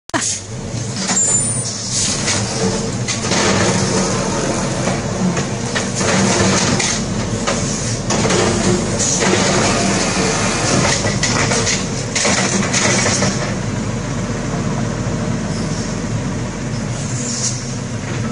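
Automated side-loading garbage truck's diesel engine running steadily while its arm grabs and lifts a wheeled trash cart, with intermittent knocks and rattles over the engine.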